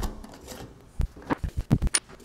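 Hands handling a metal acetone can and a shop towel at a steel bench: a few soft, irregular low thumps and small clicks in the second half, ending with one sharp metallic click.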